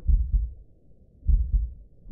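Deep, low thumps coming in pairs like a heartbeat: two double beats a little over a second apart.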